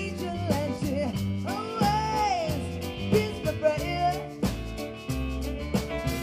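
Live rock-blues band playing with drums, bass and electric guitar on a steady beat, a lead line bending and wavering in pitch about two seconds in.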